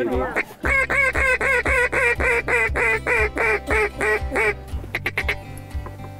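A long, even series of duck quacks, about fifteen at roughly four a second, ending about four and a half seconds in, over steady background music.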